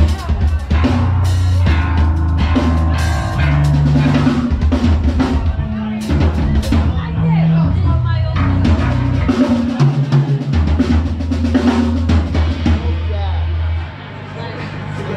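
Punk band playing live: electric guitar, bass guitar and drum kit with vocals. The bass drops out briefly about ten seconds in, and the music stops at the very end.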